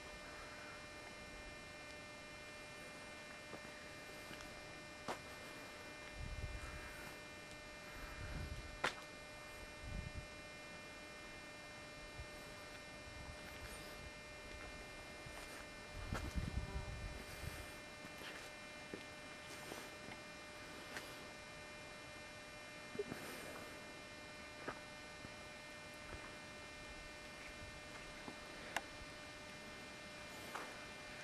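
Faint steady electrical hum made of several fixed tones, broken by a few soft low thumps and small clicks.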